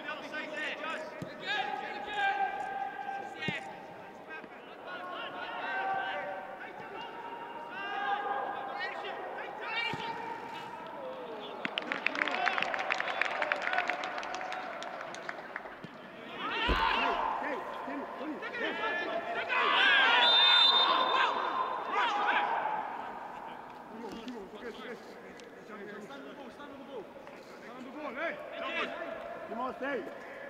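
Players and coaches shouting to each other across a football pitch in an empty stadium, with thuds of the ball being kicked; one heavy thump comes a little past halfway, and the shouting is loudest near the two-thirds mark.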